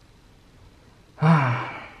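A man sighs once, about a second in: a short exhale with his voice falling in pitch and fading out, after a second of quiet room tone.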